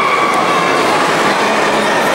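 Steady, loud din of a crowded sports hall, many voices and movements blurred together by the hall's echo into an even noise.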